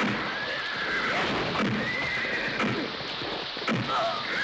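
Soundtrack of a fight in the rain: a haze of falling rain with sharp hits, and several high, drawn-out cries that arch up and level off, about one every second.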